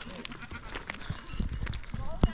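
A herd of goats bleating, over the clatter of hooves and footsteps on loose stones.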